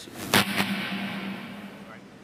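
A single sharp bang about a third of a second in, with a reverberant tail that fades over about a second, over a low steady hum.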